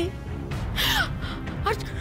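Dramatic background music with a single harsh crow caw about a second in, followed near the end by a few short rising notes.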